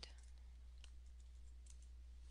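Near silence with a low steady hum, broken by two faint computer keyboard clicks as a short code is typed in.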